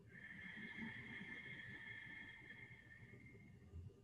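Faint, slow breath out, a soft steady hiss lasting about three and a half seconds and fading away: a long exhale of the echo-exhale yoga breathing exercise.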